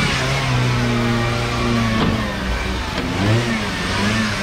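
2012 Peugeot 207's engine pulling the car slowly up a car-transporter ramp, running steadily and then revved up and back down about three seconds in.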